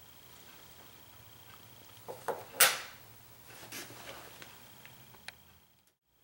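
Workbench handling noises: a few light knocks and clicks and one short, loud clatter about two and a half seconds in, then smaller knocks, over a faint steady hum. The sound fades out just before the end.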